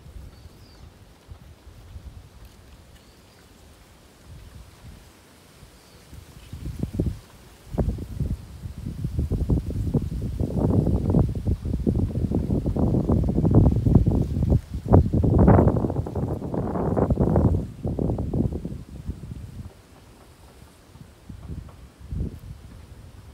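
Wind buffeting the microphone in irregular gusts: quiet at first, building about seven seconds in, loudest around the middle, and dying away a few seconds before the end.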